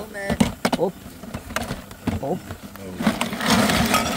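Hard plastic ice packs and bottles being handled in a plastic cooler box. There are a few light knocks, then a scraping, rattling rustle near the end.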